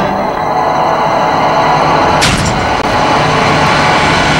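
Horror film trailer soundtrack: a loud, dense droning sound-design bed under a low steady hum, with a sharp hit about two seconds in.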